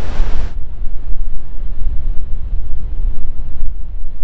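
Strong wind buffeting the microphone with a heavy low rumble, over the wash of surf breaking on the rocks. The brighter hiss thins out about half a second in, leaving mostly the wind rumble.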